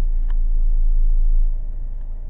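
Steady low rumble of a car in motion, heard from inside the cabin, with one faint click about a third of a second in.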